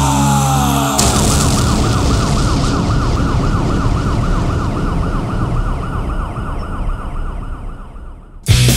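Siren sound effect closing a punk rock track. The band's music stops about a second in with a sharp hit, and a fast warbling siren tone follows and fades out near the end.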